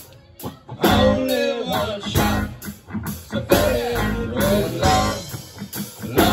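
Live band playing: electric bass, drum kit and electric guitar under a lead singer. After a brief lull at the start, the band and vocal come back in.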